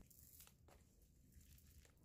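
Near silence, with a few faint, brief ticks of coarse gritty cactus potting mix trickling from fingers into a plastic tub.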